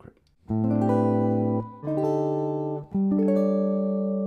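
Guitar playing three held chords, one after another: the first about half a second in, the second a little before two seconds in, the third about three seconds in and still ringing at the end.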